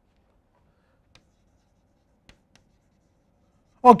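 Faint chalk writing on a blackboard, with a few light, separate taps of the chalk as words are written.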